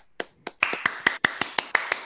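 Hands clapping: a few separate claps, then a quick, even run of claps at about eight a second.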